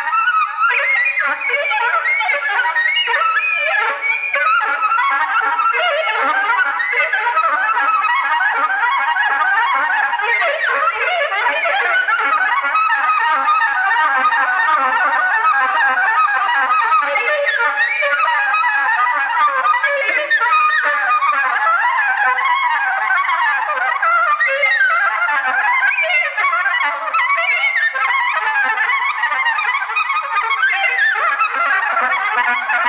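Solo soprano saxophone in free improvisation: a continuous stream of rapid, overlapping notes with no break for breath, sustained by circular breathing.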